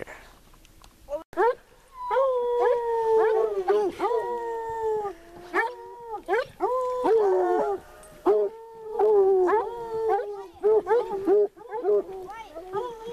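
A pack of hunting hounds baying while running a cougar, with several dogs' long, drawn-out calls overlapping and repeating. The calls start about a second in.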